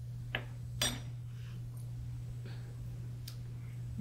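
A few light clinks and taps of kitchen utensils and dishes, two of them in the first second and fainter ones later, over a steady low hum.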